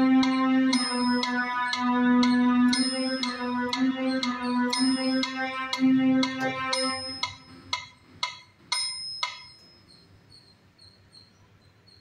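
Casio CT-X700 electronic keyboard playing a slow, simple left-hand melody in long held notes, with a metronome clicking about twice a second and a bell on every fourth beat. The playing stops about seven seconds in, and the metronome clicks on for a couple of seconds more before it goes quiet.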